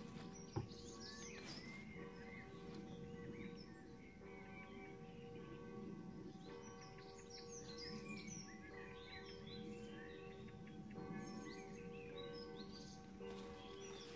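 Songbirds chirping and singing, with a sharp knock about half a second in as a plastic bottle is set down on a wooden pallet. A low, steady hum of several held tones runs underneath.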